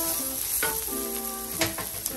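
Sliced onions, garlic and ginger sizzling in a hot oiled pan as a wooden spatula stirs them, with background music of held notes playing alongside.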